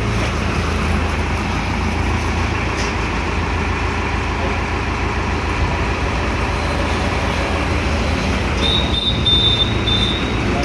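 Tractor engine running steadily at a constant speed, powering the hydraulics of a tractor-mounted crash-barrier post-driving hammer, with no hammer blows. A thin high whine comes in briefly near the end.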